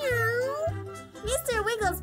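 A cartoon cat meowing: one long meow that dips and rises in pitch, then a shorter wavering one near the end, over background music with a steady beat.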